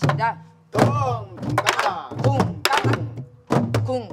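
Several sori-buk, Korean barrel drums with hide heads, struck with sticks in a jangdan practice rhythm: deep thuds on the heads mixed with sharp clacks on the wooden rims, an irregular run of several strokes a second. Voices call out the drum syllables over the beat.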